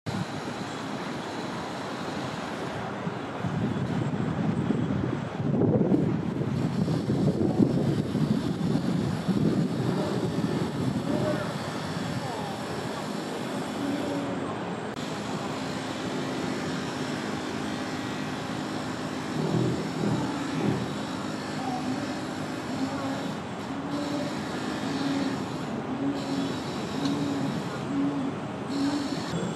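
Steady outdoor background noise like distant traffic, with indistinct voices mixed in. From about halfway through, a faint held tone comes and goes in short pieces.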